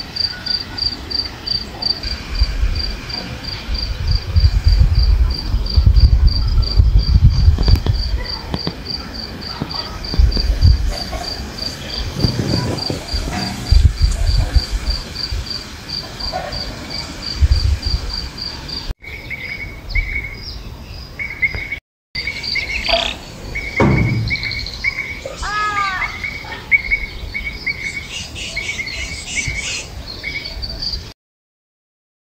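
A cricket chirping at an even two to three chirps a second, with low gusts of wind on the microphone. After a cut, another insect trills steadily while birds call with falling notes, and more birdsong comes in near the end.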